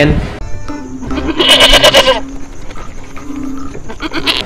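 A goat bleating once, a pulsing call about a second and a half in, over background music with a held low note.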